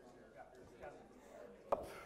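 Faint murmur of several small groups of people talking at once in a large room, with one sharp knock near the end.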